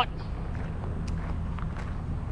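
Faint footsteps on a gravel track over a steady low background rumble.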